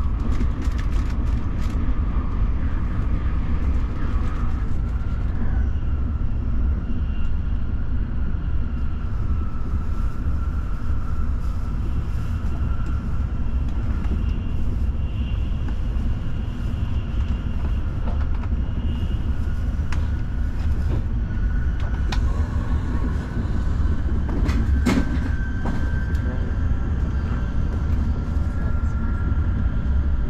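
Shinkansen bullet train running at speed: a steady low rumble with a faint high whine above it. There are clicks near the start and one sharp clack about 25 seconds in.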